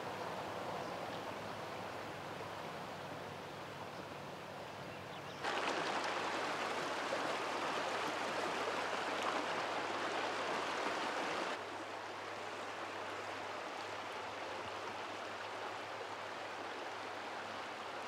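Shallow river water running over rocks, a steady rush of water. It becomes clearly louder about five seconds in and drops back to a softer rush near twelve seconds.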